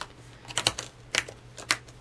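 A laminated plastic insert strip being snapped onto the discs of a discbound planner: a string of sharp clicks, about five in two seconds, unevenly spaced.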